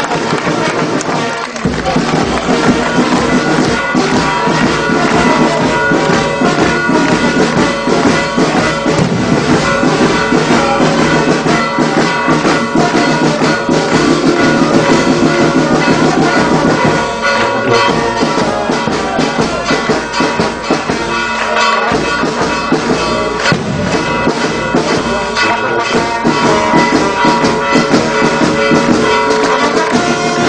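Brass band playing, with trumpets and trombones over steady percussion beats.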